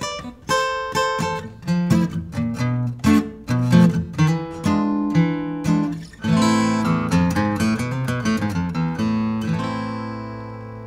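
Taylor Custom Grand Symphony steel-string acoustic guitar, with a Lutz spruce top and flame maple back and sides, played solo: quick single-note lead lines mixed with strummed chords. About six seconds in a full strum rings out, and near the end a chord is left ringing and slowly dies away.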